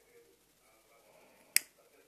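A single sharp click about one and a half seconds in, over faint room tone.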